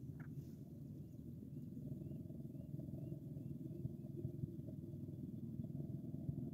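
Steady low outdoor rumble. Over it, a small bird chirps faintly, a run of short high notes about twice a second, from about one second in until near the middle.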